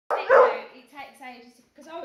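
A beagle gives one loud bark right at the start.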